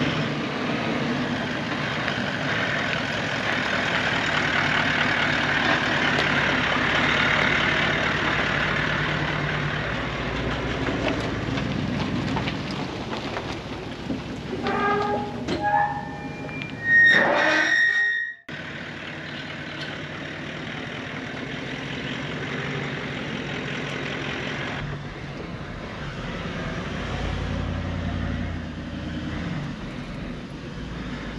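Toyota LandCruiser running on a dirt track, steady engine and road noise. About fifteen seconds in, a metal farm gate squeaks loudly as it is swung open by hand. The sound then cuts off suddenly and the driving noise comes back.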